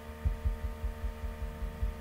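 Steady electrical hum with a run of low, soft thumps, about four a second.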